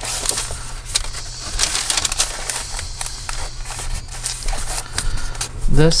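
Paper and cardstock pages of a handmade journal rustling and crackling as hands slide over them and turn a page, with many small ticks and scrapes.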